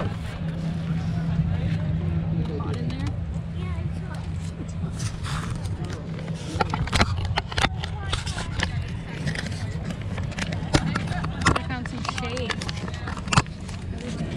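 A GoPro action camera being handled by hand, with a run of sharp clicks and knocks from fingers on its housing from about five seconds in. Under it runs a steady low rumble, and faint voices can be heard in the first few seconds.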